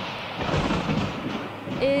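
A rolling rumble of thunder, a rushing noise that swells and then dies away over about two seconds.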